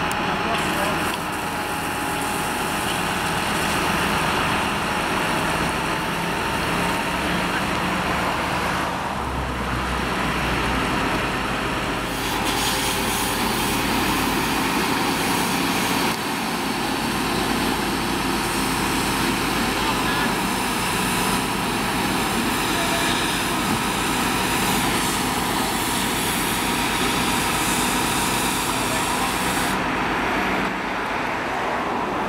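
A fire engine running steadily at the scene, giving a continuous engine noise, with voices talking in the background.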